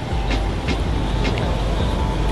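Steady low rumble of passing vehicles, with a faint steady tone above it and scattered light clicks.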